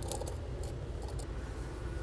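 Faint light clicks and handling noise from a cup and drain cap being worked by hand at a vacuum pump's drain port, over a steady low hum.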